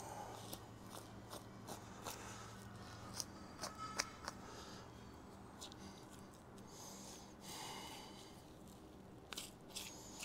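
Knife slicing and skin peeling away from the muscle of a hanging whitetail deer as it is skinned: faint, scattered small clicks and snips, the loudest about four seconds in.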